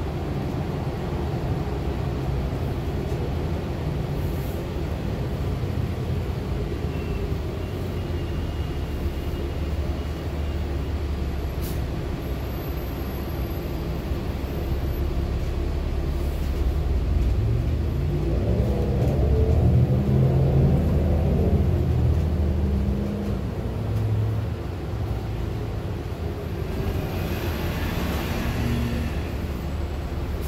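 Steady engine and road rumble heard from inside a moving city bus, the engine note climbing and then settling about two-thirds of the way through as it gets louder. Near the end a hiss of air as the bus pulls up at a stop.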